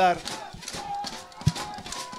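Outdoor field sound of an American football game: faint distant voices from the field, with one sharp thump about one and a half seconds in.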